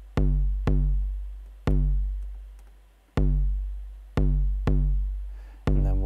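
Eurorack bass drum module triggered by a GateStorm gate sequencer, playing seven kicks in an uneven rhythm. Each kick is a short click followed by a deep boom that dies away over about a second, some cut short by the next hit.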